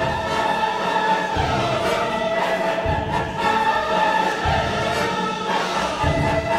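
Opera chorus singing sustained lines in French with orchestra. A low stroke in the orchestra falls about every second and a half.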